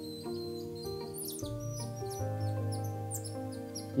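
Background music of held, sustained chords. From about a second in, a run of short, high-pitched chirps sweeps downward over it.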